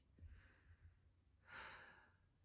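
A woman's faint, exasperated sighs: a soft breath out just after the start and a stronger one about a second and a half in.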